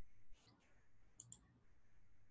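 Two quick, faint clicks of a computer mouse button, close together a little past the middle, over near-silent room tone.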